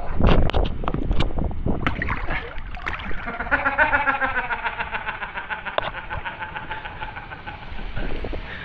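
Knocks and clatter close to the microphone. About three and a half seconds in, a droning motor comes in with a fast, even pulse, its pitch sinking slightly.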